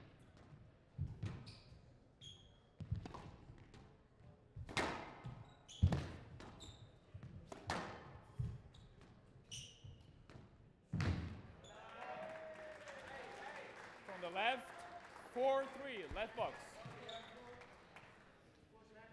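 Squash rally: the ball cracks off rackets and walls every second or two, with short high squeaks of court shoes on the floor.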